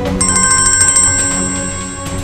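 A mobile phone ringtone signalling an incoming call: a high electronic trilling tone that starts just after the beginning and fades toward the end, over background score music.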